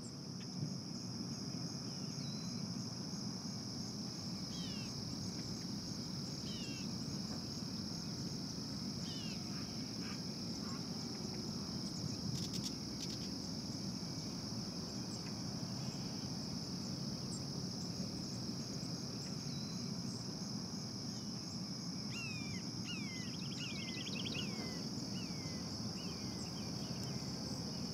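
A steady, high-pitched chorus of insects such as crickets. Birds give scattered short, falling chirps over it, with a quick run of chirps near the end.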